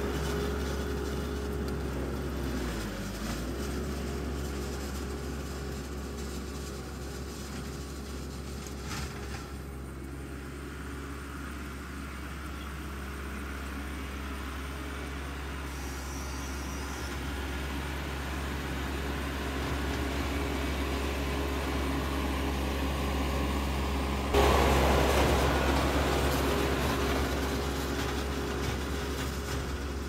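Kubota MX6000 tractor's diesel engine running steadily while it pulls a Great Plains 606NT no-till drill through a tilled field. The engine note dips briefly a few seconds in. A louder rush of noise comes in sharply about three-quarters of the way through and slowly fades.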